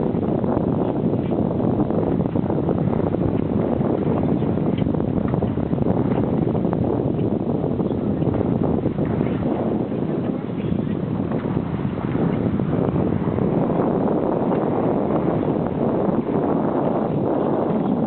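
Steady wind noise rumbling on the microphone, with no distinct strokes or other events standing out.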